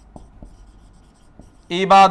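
Marker pen writing on a whiteboard: faint strokes with small taps. A man's voice starts loudly near the end.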